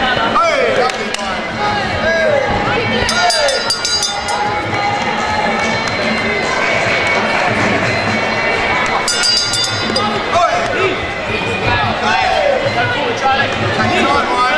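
Crowd noise with spectators and cornermen shouting over one another at a kickboxing bout, short overlapping yells throughout.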